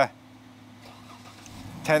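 Faint, steady low hum of a car engine running through a short pause in speech, with a man's voice coming back near the end.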